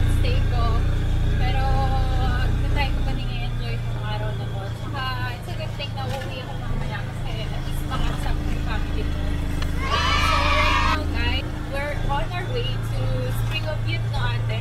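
Engine of an open-sided motor vehicle running at road speed, a steady low drone whose note drops about three seconds in and rises again near the end. A brief high-pitched sound comes about ten seconds in.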